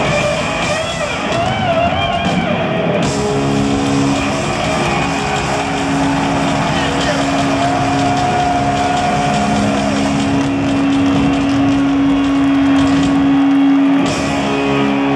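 Live heavy-metal band closing a song: distorted electric guitar with wavering, bending notes for the first few seconds, then a single long held note ringing out for about ten seconds over the band and a loud arena crowd.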